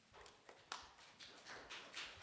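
Near silence, with a few faint, short footsteps on the floor.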